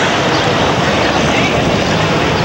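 Steady, loud outdoor ambient noise: an even wash with no distinct events.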